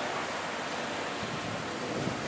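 Steady, even background hiss with no distinct cuts or knocks.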